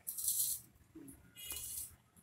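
Two short scraping rustles as a stainless-steel mixing bowl is handled on the counter, the second with a faint metallic ring.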